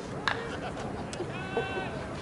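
Distant voices of players on a softball field, with a sharp knock early on and a held, high-pitched shouted call lasting about half a second near the end.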